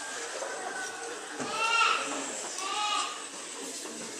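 Two short, high-pitched vocal cries about a second apart, each rising and then falling in pitch.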